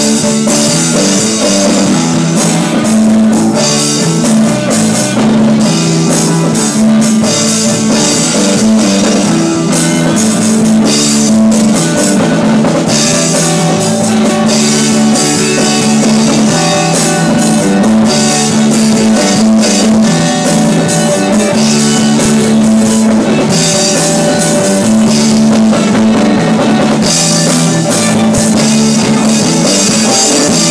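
Live rock band playing an instrumental passage with drum kit and guitar, loud and continuous.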